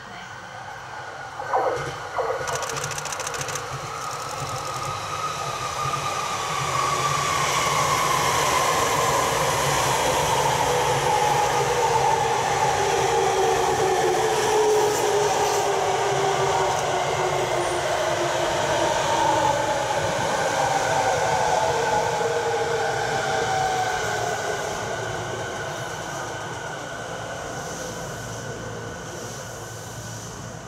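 Rinkai Line 70-000 series electric train coming in and running close past: wheel and rail noise with its inverter motor whine gliding slowly down in pitch. The sound swells to a long loud middle, then fades away near the end. Two short sharp sounds come about two seconds in.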